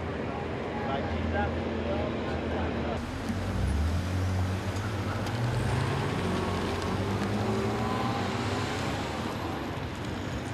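A car's engine running as it drives past, its low hum rising and falling a few seconds in, with voices in the background.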